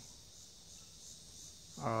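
Faint, steady chorus of insects, a high-pitched drone with no break.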